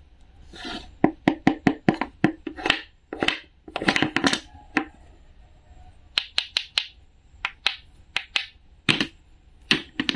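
Wooden toy fruit pieces being handled: a series of sharp wooden clicks and taps as the halves knock together, with a few short rasping scrapes in between.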